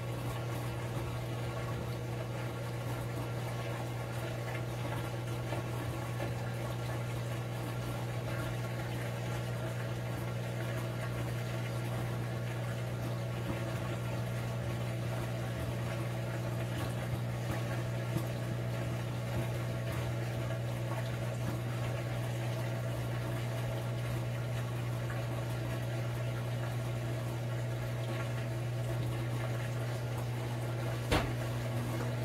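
Whirlpool WTW4816 top-load washer draining: the drain pump hums steadily as the wash water is pumped out of the tub.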